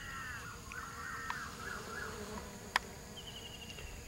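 Dwarf honeybees buzzing as they forage on the flower heads, in a wavering tone that comes and goes. A short, high, falling trill of quick chirps sounds near the end.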